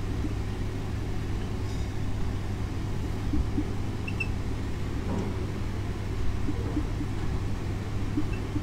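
Steady low background hum, with faint scratches of a marker writing on a whiteboard.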